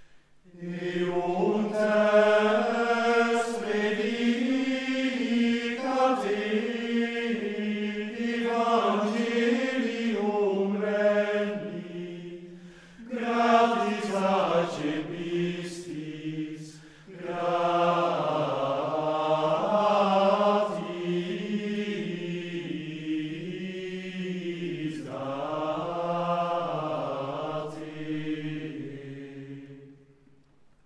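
Large men's choir singing Gregorian chant in unison, in long flowing phrases with short breaks for breath between them, ending just before the close.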